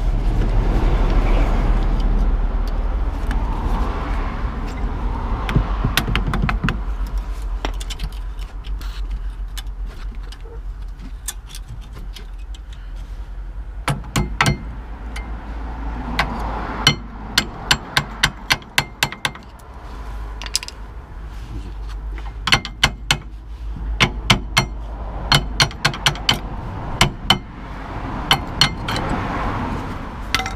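Metal hand tools clinking and tapping against a VW Golf Mk4's rear brake caliper while the worn brake pads are worked loose: scattered sharp metallic clicks and knocks, coming in quick runs in the second half.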